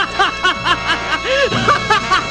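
Animated villain's evil laugh: a man's voice in quick repeated "ha" sounds, about four a second, with one longer drawn-out note about one and a half seconds in. Background music plays underneath.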